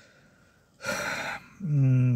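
A man draws a quick, audible breath about a second in, then hums a steady, level 'mmm' with closed lips near the end.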